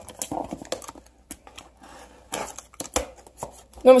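Utility knife slicing through packing tape on a cardboard shipping box: a few short, irregular scraping cuts with clicks and taps of blade and fingers on the cardboard.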